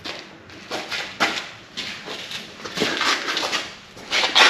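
Footsteps scuffing on a concrete floor, with the rustle of a handheld camera: a string of short, irregular scrapes about every half second.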